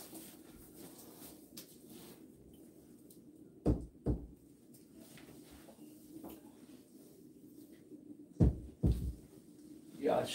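A wrapped barn door slab bumping against the wall and floor as it is shifted and set in place: two pairs of dull thumps, the second pair about five seconds after the first.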